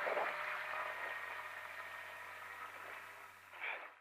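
Rally car engine running steadily at low revs, heard from inside the cabin, fading out gradually. A brief faint sound comes near the end.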